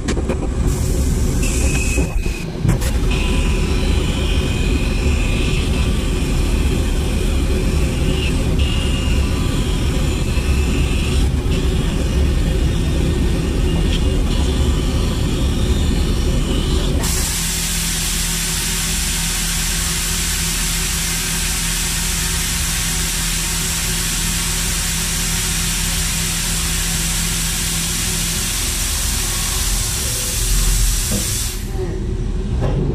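Haas VF2 CNC mill running with a steady low hum; about halfway through, its airblast switches on suddenly, giving a loud, even hiss of compressed air blowing chips off the vise on the last pass.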